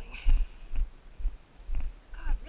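Footsteps of a person walking over rough ground, heard as dull low thumps about twice a second. A brief high tone comes near the start.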